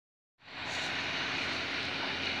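Twin-head air compressor running with a steady hum and hiss, starting about half a second in.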